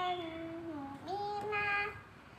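A young girl's voice singing two long, drawn-out notes, the first sliding slightly down, the second a little higher and ending just before the two-second mark.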